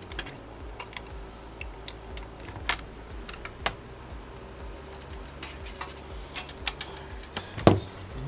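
Scattered light clicks and taps of power cables and plastic connectors being handled inside a steel desktop PC case, with one louder knock just before the end.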